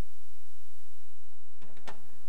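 Steady low background rumble, then near the end a short click as a screwdriver tip is set into the slot of a screw holding a steel shovel bracket on the jeep's body.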